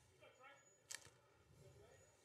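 Near silence: faint distant voices, with a single soft click about a second in.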